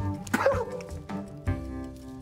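Soundtrack music with held notes, and a brief yelp-like cry about half a second in.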